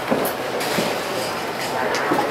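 Dry bread mix poured from a plastic bag into a glass bowl, a soft rustling hiss with a few faint crinkles of the bag, over the steady murmur of a large hall.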